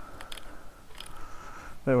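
Corrugated plastic vacuum hose being pushed down into a tight-fitting 3D-printed plastic mount: a few faint clicks and a faint steady rubbing as it is forced into place.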